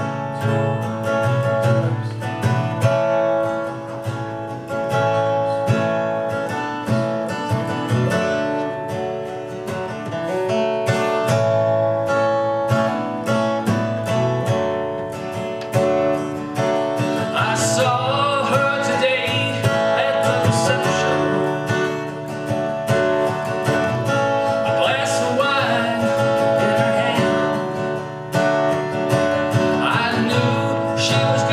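Acoustic guitar strummed steadily, with a man's singing voice joining in over it a little past halfway through.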